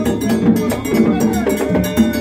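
Live gagá drumming: hand drums beaten in a quick, steady rhythm, with a sharp metallic percussion part ringing on top.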